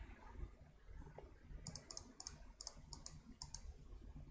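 Computer mouse clicked in a quick run of about ten sharp clicks, starting a little under two seconds in and lasting about two seconds.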